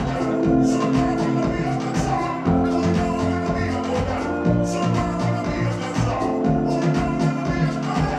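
Live electronic indie-pop played through a venue PA: sustained keyboard-synth chords over a steady beat.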